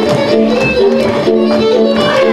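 Hungarian folk dance music led by a fiddle, held notes moving over a steady beat.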